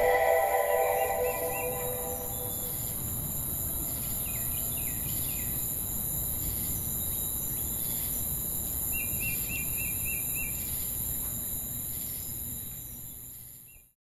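The song's last notes die away in the first two seconds, leaving an outdoor ambience: a steady high hiss with a small bird chirping in short runs of quick notes, three times. It all fades out just before the end.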